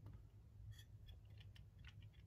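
Near silence, with a few faint light clicks from hands handling two converter/charger fuse distribution circuit boards.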